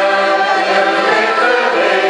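A mixed group of older men and women singing a local anthem together in unison, with accordion accompaniment.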